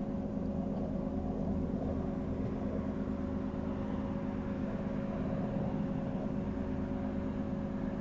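A steady low mechanical hum holding several fixed pitches at an even level, without change or interruption.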